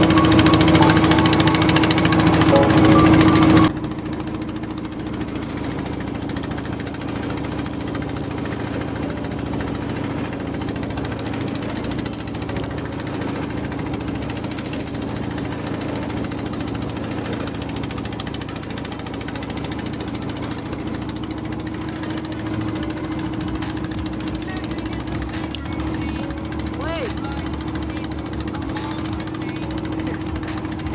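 Small wooden outrigger boat's engine running at a steady drone. Music plays over it for the first few seconds and cuts off abruptly.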